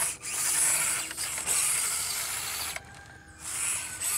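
SCX24 micro crawler's small electric motor and gear drivetrain whirring under throttle, its stock tires spinning without enough grip on a loose dirt climb. The whir breaks off briefly about a second in and again for about half a second near three seconds.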